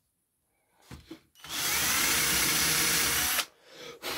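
Handheld power drill boring a hole into the wooden clock face, running steadily for about two seconds before stopping abruptly. A couple of short knocks come just before it starts.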